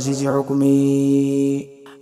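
Male voice singing an Islamic nashiid, holding one long steady note in the middle, which breaks off briefly near the end before the next line.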